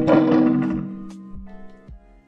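A custom pro kick scooter with steel T-bars is bounced on its deck: a sharp knock, then the frame rings with a clear resonant tone that fades away over about a second and a half, with a couple of small knocks near the end. The ring carries through the whole scooter and is the sign of a tight, dialed build with no rattles.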